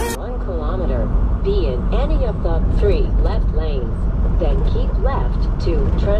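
Semi truck's steady low engine and road rumble, heard from inside the cab while driving on the highway, with a person talking over it.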